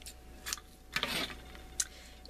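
Scissors cutting gold metallic ribbon: a few faint, short snips and clicks.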